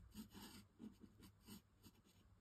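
Faint scratching of a Nuvo alcohol marker's nib on textured linen cardstock, in short repeated strokes about three a second.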